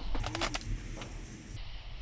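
A quick run of light taps on the side of a tent in the first half second, then one more tap about a second in.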